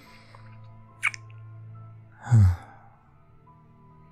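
A man's close-miked kiss, a short lip smack about a second in, then a low sigh that falls in pitch, over soft background music.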